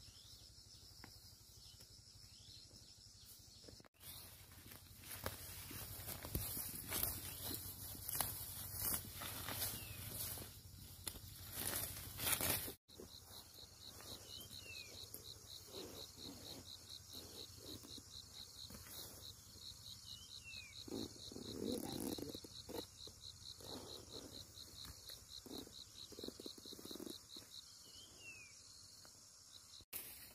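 Insects calling in a steady high trill, with rustling and snapping of grass and leaves as plants are pulled by hand in a field. Later the insect call becomes a rapid pulsed chirping, with a few short, falling bird calls over it.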